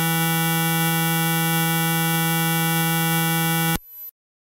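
Electronic music: a single steady buzzing synthesized drone, rich in overtones, held without change and then cutting off suddenly near the end, leaving a brief faint tail.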